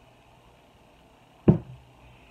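A single sharp knock about one and a half seconds in, a glass quart canning jar of water being set down on a hard surface.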